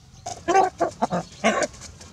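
A rooster held tightly in a hug gives a rapid run of short, harsh alarm squawks, about five in quick succession.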